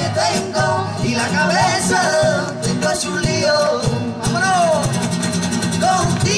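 A live song: sung vocals with backing voices over a strummed acoustic guitar and percussion, the sung lines bending up and down in long phrases.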